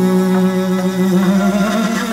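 Morin khuur (Mongolian horsehead fiddle) bowed, holding one long low note that rises slightly near the end.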